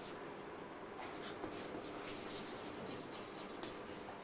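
Faint scratching of chalk on a blackboard as words are handwritten, in short irregular strokes.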